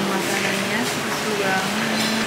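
A voice singing long held notes that step in pitch from one to the next, over a steady background hiss.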